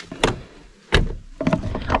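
Sharp clicks and knocks from hands handling a car's door and side mirror: one at the start, another a quarter second later and a third about a second in.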